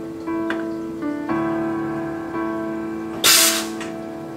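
Soft piano-like background music with held notes; a little over three seconds in, a short, loud hiss of steam vented from the La Marzocco Linea Mini espresso machine.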